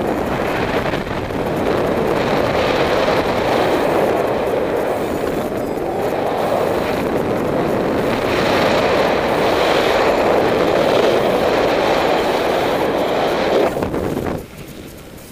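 Loud rush of wind over the camera microphone of a paraglider in flight, swelling and easing in waves.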